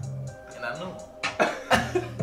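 A hip-hop beat plays under the freestyle rap, with regular low kicks and hi-hat ticks. In the second half two men burst into loud, breathy laughter.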